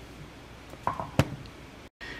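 Low steady background hiss with a few light clicks about a second in, the last a single sharp tick.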